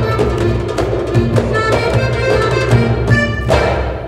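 Live Egyptian baladi music: an accordion melody over goblet-drum (darbuka) and frame-drum rhythm. It ends with a final full-band hit about three and a half seconds in, then dies away.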